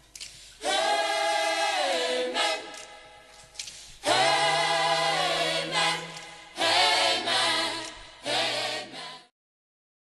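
A choir singing in several phrases, each starting loud and fading, then stopping abruptly about nine seconds in.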